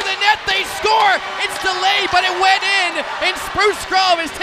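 Excited voices shouting and calling out in the moments just after an ice hockey goal, with scattered sharp knocks.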